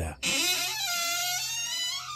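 Sound effect of an old mausoleum door creaking open: one long, high squeal that wavers in pitch, starting just after the narration stops.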